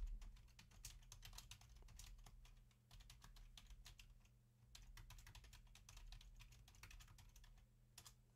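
Faint typing on a computer keyboard: quick runs of keystrokes with short pauses between them, over a low steady hum.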